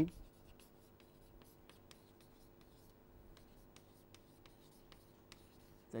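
Chalk writing on a blackboard: a string of faint, irregular taps and scratches as words are chalked up.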